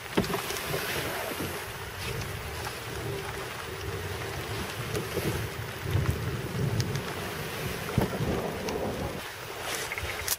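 Steady rush of wind noise on the microphone with an uneven low rumble, as a plastic kayak is dragged over sand through brush. A few sharp knocks or clicks come through, one near the start and one about eight seconds in.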